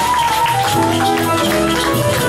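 A small live band playing Brazilian jazz: held melody notes over guitars, keyboard, bass, drums and hand percussion.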